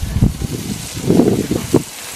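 Marinated meat sizzling on a charcoal grill, a steady hiss, with irregular low rumbles of wind or handling on the microphone.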